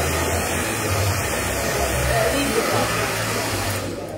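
Hand-held hair dryer blowing a steady stream of air over a watercolour painting to dry the wet paint, switched off abruptly just before the end.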